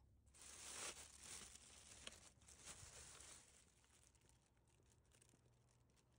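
Faint crinkling rustle of a plastic takeout bag being handled for the first three and a half seconds, then near silence.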